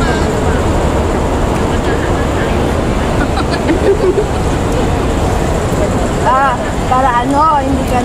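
A steady low rumble of city traffic runs throughout, with women's voices talking over it, most clearly in a short stretch a couple of seconds before the end.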